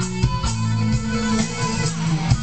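Electric guitar playing a lead melody in a rock ballad, the notes picked one after another over sustained low bass notes.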